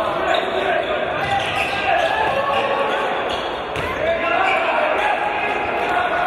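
Handball game sounds in a large, echoing sports hall: the ball knocks against the wooden court a few times amid people's voices calling out.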